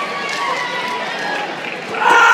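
Spectators' voices in a gym, with one long drawn-out shout held at a steady pitch for most of the time, as a shot putter winds up in the circle.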